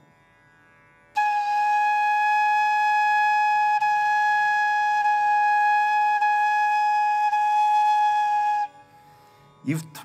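Carnatic bamboo flute (venu) playing one long, steady held note with a clear, pure tone and a light breathiness. It starts about a second in and stops cleanly about seven and a half seconds later. The tone comes from the air being aimed at the right angle so that it all goes into the blowing hole.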